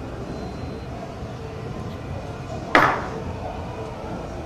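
Shot glasses set down hard on the bar once, about three quarters of the way in: a single sharp glassy clack with a brief ring.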